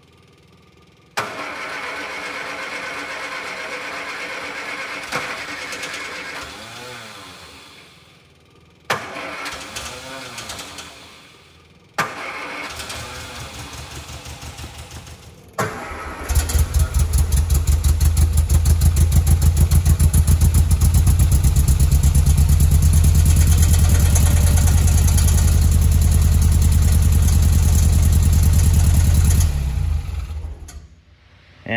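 MGA's four-cylinder engine being cold started on a temporary fuel bottle: the starter cranks it in three tries, and on the third it catches about sixteen seconds in. It then runs steadily for about fourteen seconds before it is switched off and stops abruptly near the end.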